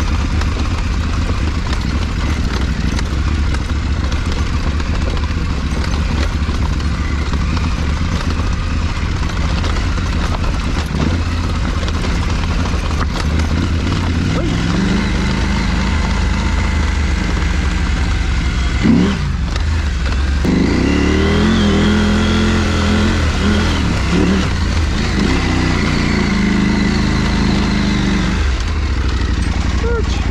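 Adventure motorcycle engine running as it is ridden down a rocky dirt track, over steady wind and tyre noise. About two-thirds of the way through the engine note dips briefly, then climbs and wavers with the throttle.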